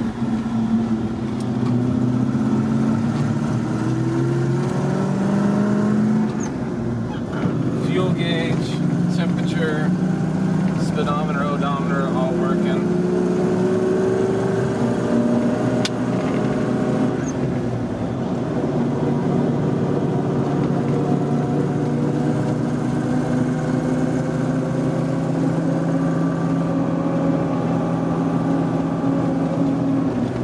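Land Rover Defender 90's swapped-in 4.0-litre Rover V8 heard from inside the cab while driving. It rises in pitch as it accelerates, dips at a gear change about six seconds in, climbs again, then holds a steady note at cruise.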